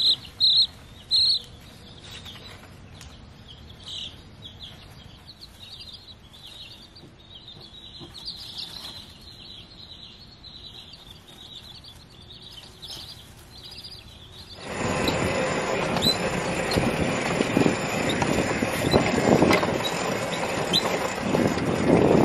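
A brood of baby chicks peeping, many short high chirps. About two-thirds of the way through, the rough, steady running noise of a vehicle driving starts abruptly and takes over.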